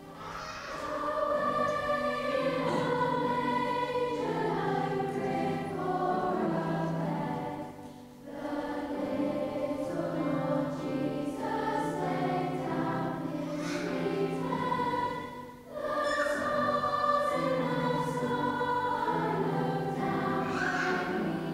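Large school choir of young voices singing in long sustained phrases, with short breaks between phrases about eight seconds in and again near sixteen seconds.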